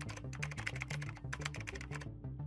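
Keyboard-typing sound effect: a quick run of key clicks with a short pause about halfway, over background music with a steady bass pattern.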